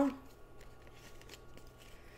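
Tarot cards being handled in the hands, sliding and flicking against each other in faint, scattered soft clicks and rustles.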